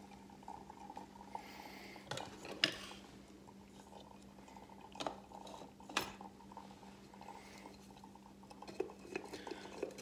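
Kitchenware being handled: a few scattered clinks and knocks, the sharpest about two, five and six seconds in, over a steady low hum.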